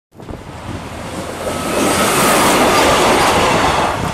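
A Siemens Desiro diesel multiple unit passing at speed: the rush of its wheels on the rails grows louder as it approaches and is loudest in the second half as it goes by, with a faint whine that drops in pitch as it passes.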